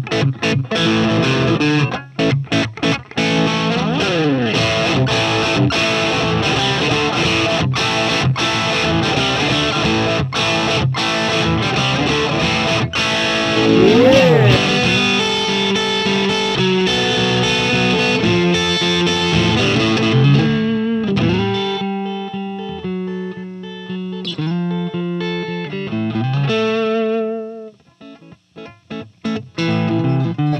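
Sandberg California DC Masterpiece Aged electric guitar played through a Marshall JCM800 gain tone with the gain turned up to about eight: dense distorted riffing with string bends about 4 and 14 seconds in. In the last third it turns to sparser single notes with wide vibrato, which fade out just before the end.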